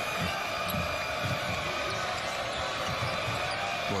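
A basketball being dribbled on a hardwood court, a few bounces a second, over steady arena crowd noise.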